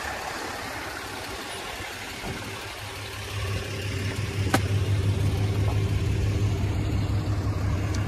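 White Ram pickup truck's engine running as the truck pulls away from the curb and drives off, its low engine sound growing louder from about halfway. A single sharp click near the middle.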